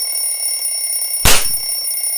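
Electronic bedside alarm sounding a steady, high-pitched tone. About a second in, a single sharp snap cuts across it, the loudest sound.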